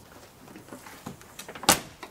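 Pickup truck tailgate swung shut by hand: a few faint knocks, then one loud latching slam near the end. It closes cleanly, without catching on the folding hard tonneau cover's clamped edge.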